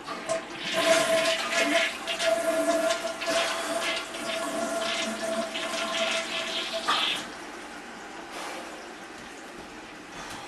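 Toilet flushing: a loud rush of water with a steady tone running through it, cutting off suddenly about seven seconds in.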